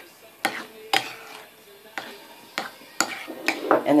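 A spoon stirring a thick mayonnaise dressing in a ceramic bowl, with about five sharp clinks of the spoon against the bowl.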